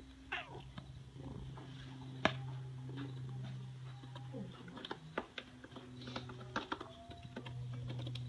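Domestic cat close to the microphone: a short meow right at the start, then small clicks and rustles over a steady low hum.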